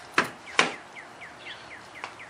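Plastic trunk trim cover on a 2010 Camaro being lifted off, its push-pin fasteners popping free with two sharp clicks about half a second apart.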